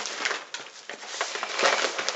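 Plastic packaging and paper crinkling and rustling as hands unwrap a parcel, a string of small crackles that grows louder near the end.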